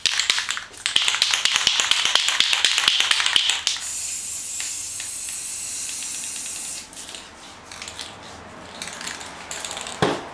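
Aerosol spray paint can shaken hard, its mixing ball rattling rapidly for about three and a half seconds, then a steady hiss of paint spraying for about three seconds before it stops.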